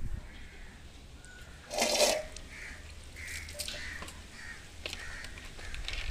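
A bird calling: one loud, harsh call about two seconds in, then a run of soft, short calls.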